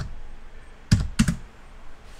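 Computer keyboard keystrokes: two sharp key clicks about a second in, a third of a second apart. They come as the last letter of a terminal command is typed and Enter is pressed.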